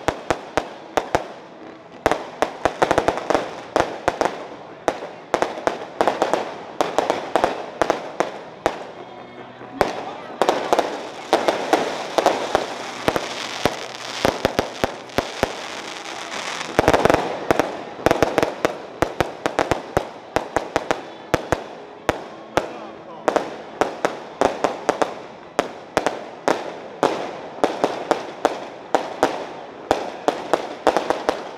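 Fireworks going off: dense, rapid strings of sharp bangs and crackles, with a few brief lulls, over the murmur of a crowd's voices.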